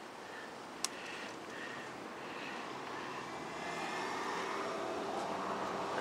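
Steady engine and road noise of a passing vehicle, building gradually over several seconds, with one sharp click about a second in.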